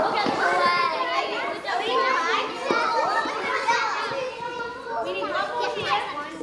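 A class of young children all calling out at once, loud, high and overlapping, as they scramble into small groups in a drama game.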